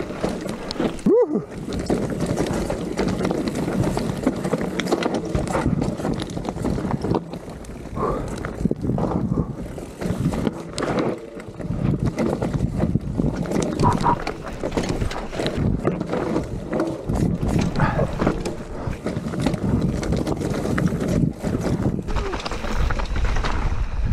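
Enduro mountain bike (Vitus Sommet 29 CRX) clattering down a rocky trail at speed: dense, irregular rattling and knocking from the tyres, chain and frame over loose stones.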